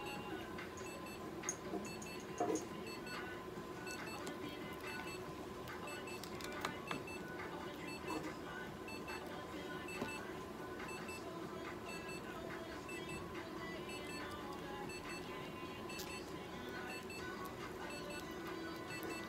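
A steady electronic hum with short, faint high beeps repeating in a regular pattern, and a few light clicks.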